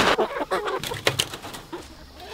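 Freedom Ranger meat chickens clucking and murmuring in short low calls, with a few sharp clicks in the first second or so.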